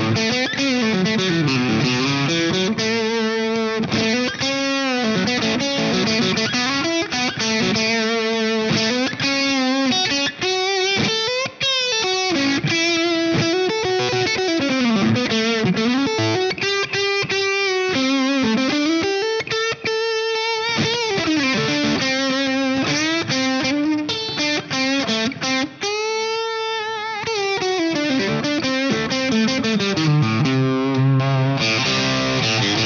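Godin Session Custom electric guitar played through an overdriven amplifier: a single-note lead melody with string bends and vibrato, including a long held, bent note near the end.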